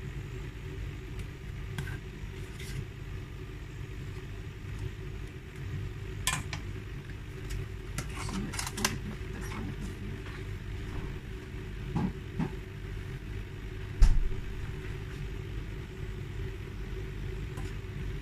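A steady low hum runs under scattered light clicks and knocks of a spatula against a nonstick frying pan as butter is spread in it. One louder knock comes about fourteen seconds in.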